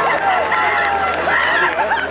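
Several voices shouting and cheering at once on a football ground, celebrating a goal just scored, over a steady low hum.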